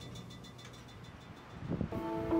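Quiet outdoor wind noise, swelling into a low, uneven rumble near the end. Under a second in, a faint, fast, even ticking stops.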